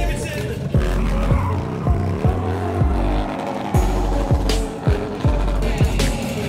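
Hip-hop music with a deep, booming bass and kick drums every half second or so. A motorcycle engine revs underneath it.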